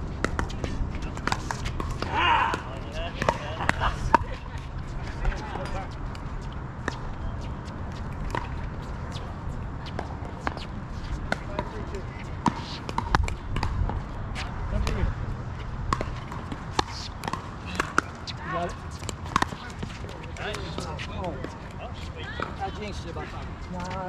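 Pickleball paddles hitting a plastic ball: a scatter of sharp pops through the whole stretch, from the rally on this court and from games on the neighbouring courts, with faint voices now and then.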